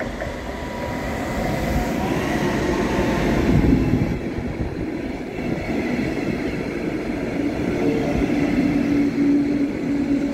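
Regional train of a red electric locomotive and double-deck coaches passing close by on the platform track. The rumble builds to its loudest as the locomotive goes by, about three and a half seconds in, then the coaches keep rolling past with a steady low hum.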